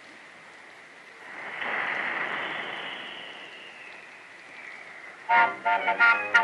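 Cartoon train sound effect: a rushing hiss that swells and fades over a few seconds as the train runs along the rails, then a few short pitched toots near the end.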